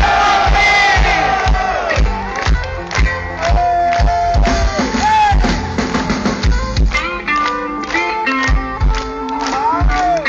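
Heavy metal band playing live through a concert PA: an electric guitar plays a lead with bent notes over steady drum beats. A crowd cheers and yells, loudest in the first couple of seconds.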